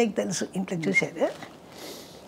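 A woman's voice speaking for about a second, then a short quiet pause with a faint rustle or breath.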